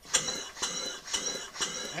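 A single-cylinder four-stroke engine, converted to run on compressed air, starts up suddenly on 50 psi of air. It runs at a steady beat, giving a puff of air with a hiss and a light knock about twice a second.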